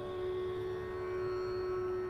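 Slow instrumental background music holding one long, steady note.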